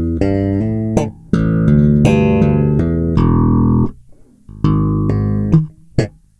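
Electric bass played with slap technique: fast runs of notes, a few thumb slaps with hammered-on and pulled-off notes changing pitch in quick steps between them (slap legato). The playing pauses briefly about four seconds in, picks up again, and ends on a sharp slapped accent.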